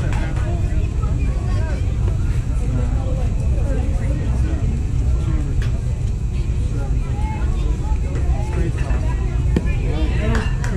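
Faint, indistinct voices of players and spectators over a constant low rumble, with a single sharp knock near the end.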